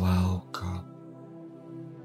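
Soft ambient music with long held tones, and a person clearing the throat in two short harsh bursts within the first second; only the music goes on after that.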